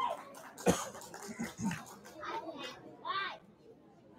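Scattered, quiet talking from an audience in a hall, children's voices among it, with one sharp knock just under a second in.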